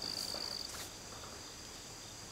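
An insect's steady high-pitched buzz, which stops about two-thirds of a second in, over a quiet outdoor background with a faint click just after.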